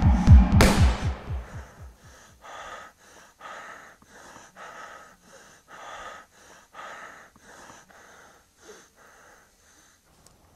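A throbbing, heartbeat-like pulse in the film score ends with a sharp hit about half a second in. Then a man breathes heavily and fast, about two breaths a second, dying away near the end.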